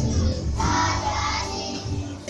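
Young children singing together in unison over recorded backing music.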